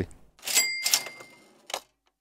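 Cash-register "ka-ching" sound effect: a short mechanical clatter about half a second in, then a high bell ringing on for under a second. A brief click follows near the end.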